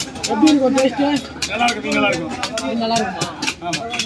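A man talking over repeated sharp knocks of a heavy knife striking a fish and the wooden stump chopping block beneath it.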